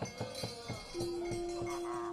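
Quiet gamelan accompaniment to a wayang kulit performance: light metallic taps, then a steady held note comes in about a second in and carries on.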